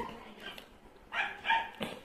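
A dog barking twice, a little over a second in, followed by a brief click.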